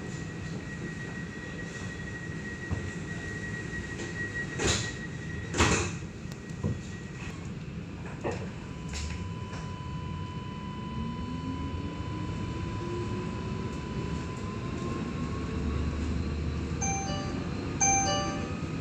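Inside an Alstom Citadis light rail tram at a stop: a steady high tone and two knocks as the sliding doors close. Then the electric traction drive whines, rising steadily in pitch as the tram pulls away. A short electronic chime sounds near the end.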